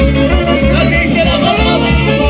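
Live Romani wedding dance band music played loud through PA speakers: a steady pulsing bass beat under a wavering, ornamented lead melody.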